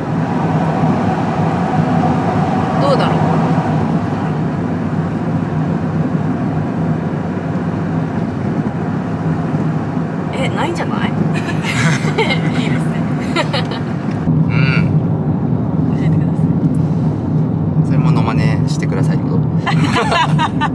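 Steady low road and engine noise inside a moving car's cabin, with quiet bits of speech over it in the second half.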